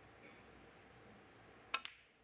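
Hushed arena room tone. Near the end comes a sharp click of snooker balls striking, with a quick second click right after it.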